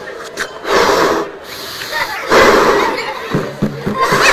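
A man blowing up a rubber balloon by mouth: two long, breathy puffs of air about a second and a half apart. A voice is heard briefly near the end.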